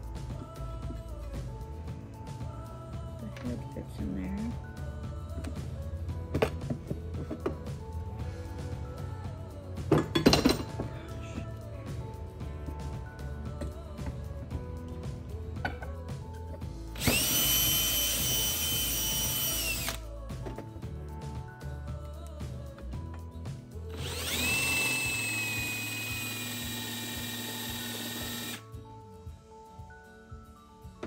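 Cordless drill boring screw holes through an aluminium T-track rail, in two bursts: one about three seconds long near the middle and a longer one of about four seconds towards the end. A single sharp clatter comes about ten seconds in, and background music plays throughout.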